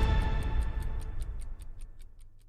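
News programme intro theme ending: a sustained music chord dies away under a quick, even ticking of about five ticks a second, like a clock.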